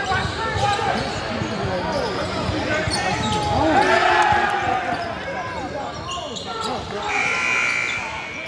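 Basketball game play in a gym: a basketball bouncing on the hardwood court amid the voices of players and spectators, all echoing in the large hall.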